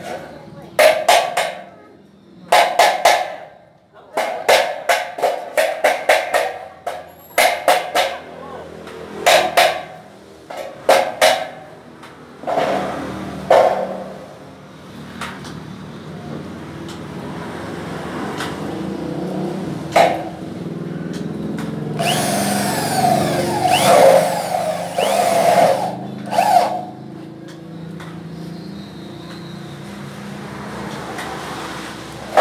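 Hand tool tapping on a metal part in short clusters of sharp strikes, about every one to two seconds through the first half. Later a louder, sweeping mechanical noise swells and fades a little past the two-thirds mark.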